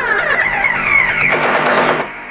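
Techno track in a breakdown: a dense synth sweep climbing in pitch, with no kick drum, easing down near the end.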